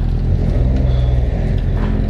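Audi S4's turbocharged V6 idling with a steady low rumble, running through aftermarket Frequency Intelligent front exhaust pipes with the exhaust valves open.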